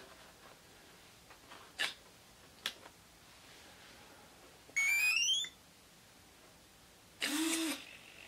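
A radio-control transmitter powering on with a short tune of rising beeps about five seconds in, after two faint clicks. Near the end comes a brief servo whir as the gear door servos snap the doors open on start-up.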